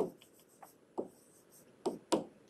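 A stylus tapping and scratching on a tablet screen as a word is handwritten: a few sharp taps, the loudest three about a second apart, with fainter ticks between.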